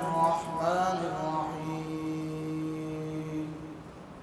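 A man chanting Quranic recitation in Arabic: a wavering melodic phrase, then one long held note that fades out about three and a half seconds in.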